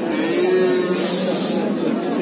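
A sheep bleating once, one long call of about a second, over the chatter of a crowd.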